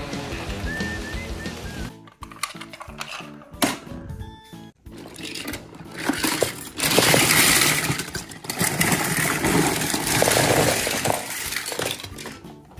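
Film music fades out at the start. About seven seconds in, a plastic bin of die-cast metal toy cars is tipped out, and the cars clatter and clink onto a heap on the floor for about five seconds.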